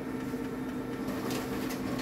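Xerox AltaLink C8155 colour multifunction printer running as it processes a print job: a steady hum, with a couple of faint ticks about a second and a half in.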